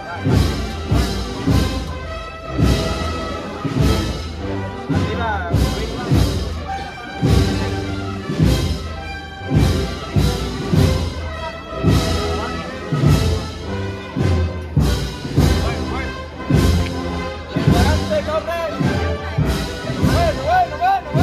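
A wind band playing a slow Spanish Holy Week procession march. Brass and woodwind chords sound over regular heavy drum strokes.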